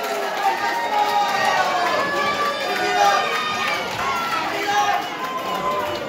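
Wrestling crowd shouting and chattering, many voices overlapping with no single clear speaker.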